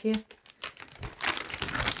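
Clear plastic bag crinkling as it is handled and pulled out of a box of jigsaw puzzle pieces, starting about half a second in and growing busier toward the end.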